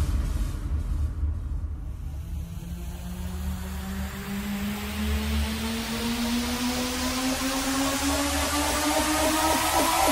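Dark techno / industrial electronic track in a breakdown: the beat drops out, leaving a pulsing sub-bass under a synth riser that climbs slowly in pitch with a swelling noise sweep. It builds steadily louder, and a fast rhythmic synth pattern comes back in near the end.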